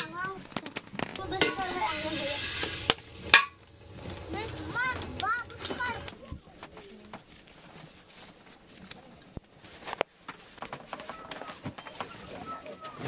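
A metal kettle set on a hot stove: a hiss for about a second and a half, like water sizzling on the hot metal, then one sharp knock, with low talk behind and scattered small clicks afterwards.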